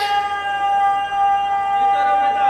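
A boy's singing voice holding one long, steady high note on the last syllable of a recited verse, amplified through a microphone.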